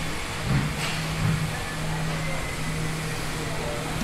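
A steady low mechanical hum over even background noise, with a couple of faint brief knocks about half a second and just over a second in.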